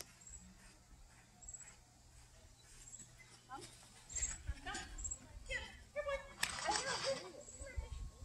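A woman's voice calling short cues to a dog as it runs an agility course. Her voice is distant and fairly faint, picking up from about three and a half seconds in.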